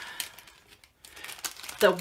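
Plastic craft-supply packaging crinkling as it is handled: faint crackles at first, then a spurt of short crinkles about a second in.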